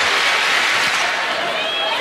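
Steady hubbub of a large indoor crowd of spectators, with a few faint raised voices or whistles above it.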